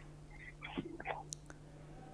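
Faint handling sounds at a desk: a few soft rustles and small light clicks, as papers or cards are moved about.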